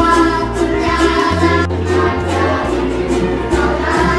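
A group of primary-school children singing a Christmas song together, accompanied by strummed ukuleles and a bass guitar playing long low notes that change about once a second.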